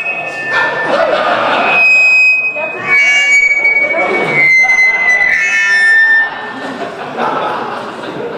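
Microphone feedback through a PA: loud, steady high whistling tones that jump to a new pitch every second or so, over a man talking into a handheld microphone. The howl stops about six seconds in.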